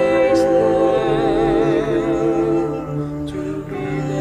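An a cappella choir of mixed women's and men's voices singing sustained chords in close harmony, the top voices with a slight vibrato. The chord moves about a second in and again near three seconds, where it briefly softens.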